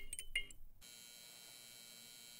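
The fading tail of an intro sound effect: a few faint, short, high clinks die away within the first second, followed by near silence.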